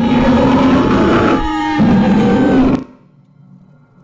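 A woman's loud scream in two long bursts with a short break between them, cutting off about three seconds in.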